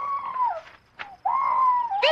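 A woman screaming, heard as if from under the ground: two long held cries, the second starting just over a second in, with a short click between them.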